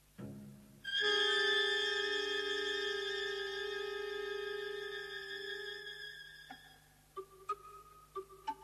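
Background string music from a silent-film score. A low note sounds at the start. About a second in comes a loud, held chord that fades away over some five seconds. Short plucked notes follow near the end.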